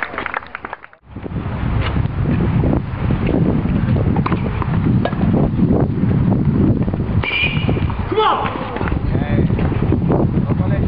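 Wind rumbling on the microphone, with indistinct voices and a few faint knocks. The sound drops out briefly about a second in.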